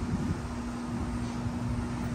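Steady low mechanical hum: one constant tone over a continuous low rumble.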